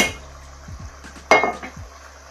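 Metal frying pan handled on a gas stove, giving two clinks, one at the start and a louder, briefly ringing one just over a second later. A steady low hum runs underneath.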